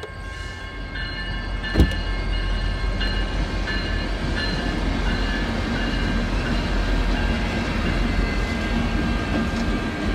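A train passing a street level crossing: a steady rumble that builds over the first two seconds and then holds, with steady high tones over it. A single sharp knock about two seconds in is the loudest moment.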